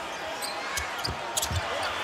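Basketball dribbled on a hardwood court, a few low bounces close together, over the steady noise of an arena crowd.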